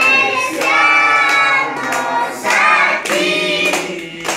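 A group of mixed voices, adults and children, singing together at the birthday cake, with hands clapping along in time, roughly two claps a second.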